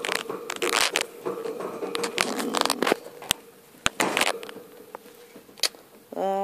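Rustling, scraping and sharp clicks from a phone being fumbled and handled against its microphone, in several bursts. A faint steady hum underneath stops about four seconds in, and the handling noise thins out towards the end.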